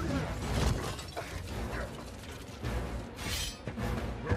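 Film battle sound effects: a sudden crash with shattering debris at the start, then clanking mechanical hits and a rush of noise about three seconds in, over the film's music score.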